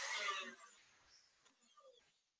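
KitchenAid stand mixer whisking cream and condensed milk: a steady whirring that fades out about half a second in, leaving near silence.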